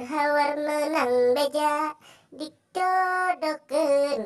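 A person singing unaccompanied in a high voice, drawn-out notes that slide between pitches, with a short break a little past halfway.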